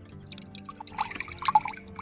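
Coconut water pouring from a cut green coconut into a steel tumbler, in irregular drips and small splashes that pick up about halfway through. Background music plays underneath.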